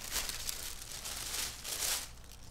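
Tissue paper crinkling on and off as a wrapped package is opened by hand, a little louder near the end.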